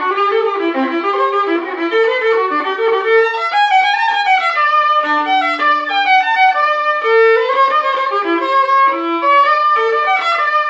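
Solo violin, a JTL (Jérôme Thibouville-Lamy) instrument labelled 'Louis Fricot Paris', playing a Scots jig in quick running notes. Midway through, a lower note is held steady for about two seconds under the moving tune.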